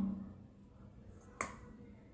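A steel spoon clicking once against a steel plate, a single short sharp click about a second and a half in, with the room otherwise quiet.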